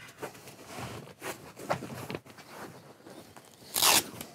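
Upholstered seat cushions and backrest being handled and repositioned, with fabric rustling and scraping. Near the end comes one short, loud rip of a Velcro fastening being pulled apart.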